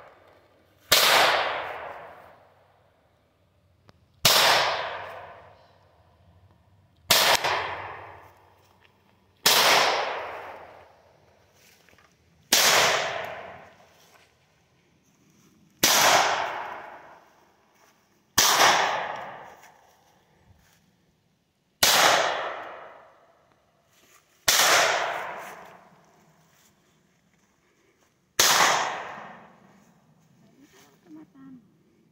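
Ten single pistol shots from a Taurus TX22 .22 LR pistol, fired slowly about every three seconds, each sharp crack followed by a long fading echo through the surrounding woods.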